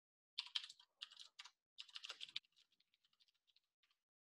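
Typing on a computer keyboard: a quick run of faint key clicks over the first couple of seconds, then a few sparser, fainter clicks.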